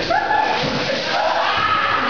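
People's voices raised and yelling, with a thud right at the start.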